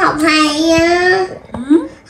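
A young child's high voice holding one long drawn-out vowel on a nearly steady pitch for over a second, then a short rising sound near the end.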